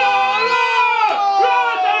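Men shouting long, overlapping cries of "¡Oh!" in celebration of a goal just scored.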